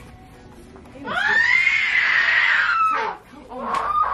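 A long, high-pitched scream starting about a second in and lasting about two seconds, followed near the end by a second, lower scream that falls in pitch.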